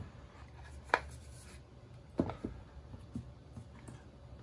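Hands opening a cardboard phone box: the lid is lifted off the base with soft rubbing of cardboard. Light clicks and taps come through it, one about a second in and two a little after two seconds.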